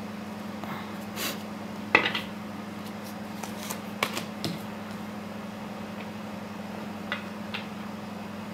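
Cards handled and drawn from a deck, with a card laid on a glass tabletop: a few soft clicks and taps, the sharpest about two seconds in, over a steady low hum.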